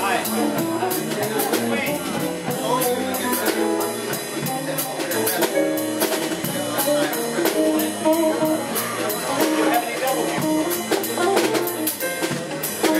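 A live band playing an instrumental groove: a drum kit keeping a steady beat on the cymbals under electric guitar, bass and keyboard.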